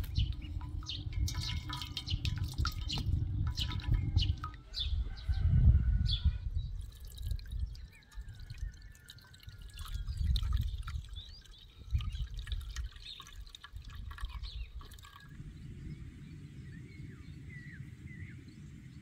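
A metal spoon scraping and pressing boiled dandelion flowers in a stainless steel colander, with liquid dripping through, then the strained dandelion liquid poured and trickling through a fine mesh sieve into a metal pot. Near the end, a steady outdoor hush with small bird chirps.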